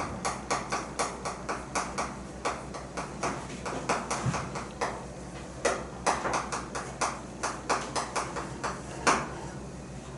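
Chalk writing on a blackboard: a quick, irregular run of taps and short scratches, several strokes a second, ending about nine seconds in.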